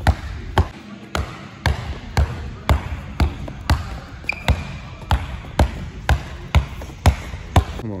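Basketball being dribbled on a plastic tiled sport court in a steady rhythm of about two bounces a second, with a brief high squeak about four seconds in.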